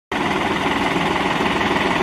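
Farm tractor's diesel engine running close by, a loud, steady, fast pulsing that starts just after the beginning.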